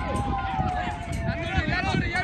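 Voices shouting across a football pitch: one long drawn-out call that sags slightly in pitch, then quicker shouted calls near the end, over a steady low rumble.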